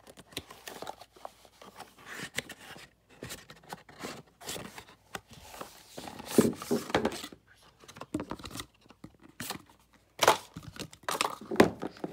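A cardboard accessory box and its packaging being opened and handled: irregular rustling and clicking, loudest about six and ten seconds in.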